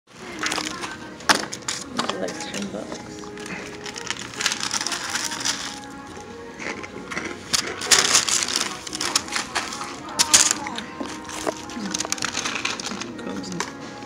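Restaurant dining-room sound: background music and indistinct voices, broken by sharp clicks and knocks, the loudest about a second in and again about ten seconds in.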